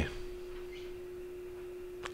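A faint, steady hum at one pitch, held without change, over quiet room tone.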